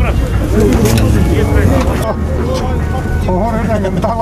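Murmur of people talking at a busy outdoor livestock market, over a steady low rumble.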